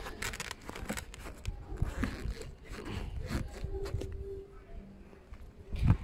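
Rustling and scraping of a hand handling a motorcycle's vinyl seat cover, with scattered sharp clicks.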